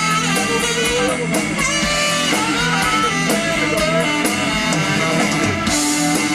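Live blues-rock band playing an instrumental: saxophone melody lines over electric guitar and drum kit, with a steady cymbal beat.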